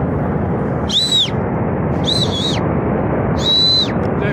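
Three short, high whistles from a person, each ending in a falling slide, over a steady roar from the flood-filled gorge below.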